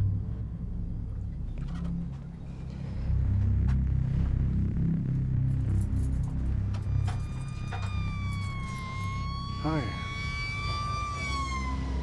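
An emergency siren comes in about seven seconds in: one long, slowly wavering tone that falls away near the end, taken for a fire engine's siren. It sounds over a steady low rumble.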